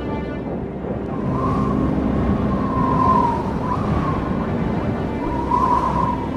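Background music with a blizzard wind sound effect: a steady low rush with a wavering, howling whistle that comes in about a second in and swells again near the end.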